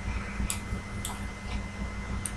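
A few isolated sharp clicks at a computer, about half a second apart, as a password is about to be typed, over a steady low electrical hum.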